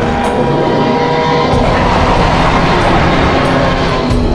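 Loud dinosaur roar and growl sound effects for a Tyrannosaurus and Spinosaurus fight, over background music with some held notes.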